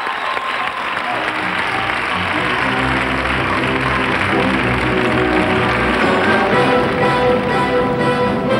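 Studio audience applauding as the instrumental introduction of a copla starts underneath, its low notes coming in about a second in and higher melody notes joining near the end.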